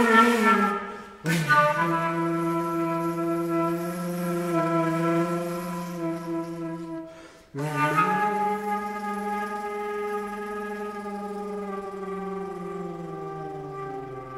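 Solo flute playing long, low, sustained notes that waver and bend slightly in pitch. It breaks off briefly about a second in and again about seven and a half seconds in, and the last note slides slowly downward near the end.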